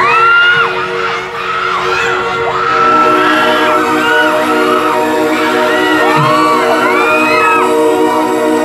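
A live rock band playing through a PA in a hall: electric guitar, bass guitar and drum kit, recorded from among the audience, with cheers and whoops from the crowd over the music. The sound dips briefly about a second in, then carries on steadily.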